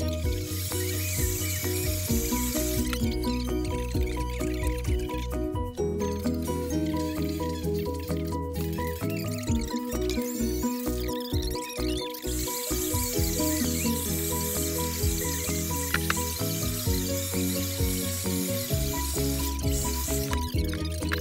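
Instrumental background music with a bass line and repeating melodic notes.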